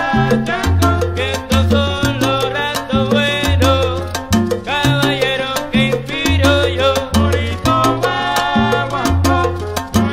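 Salsa band record in an instrumental stretch: a bass line steps through low notes under sustained melodic riffs, with sharp percussion strokes keeping a steady beat.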